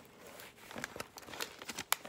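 Paper pages of a handmade journal rustling and crinkling as they are leafed through by hand, with many small crisp clicks and one sharper snap near the end.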